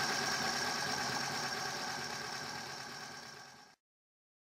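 Roundhouse Argyll gas-fired live steam model locomotive running on stand blocks with its wheels turning freely, a steady mechanical running sound that fades out and stops shortly before the end.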